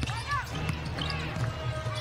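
Live basketball play on a hardwood court: the ball dribbling and sneakers squeaking, with a few short squeaks early on, over a steady arena crowd rumble.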